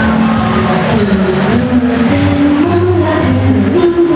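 A girl singing a sustained melody into a microphone over a loud recorded musical accompaniment, amplified through a sound system.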